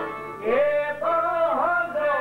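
A man singing an ornamented Albanian folk melody that glides and bends, accompanied by plucked long-necked lutes of the çifteli kind, with a brief break in the line just before half a second in.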